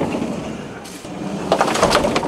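Mercedes Sprinter van's sliding side door being worked: a rumble as it runs on its track, then clattering and a heavy clunk near the end.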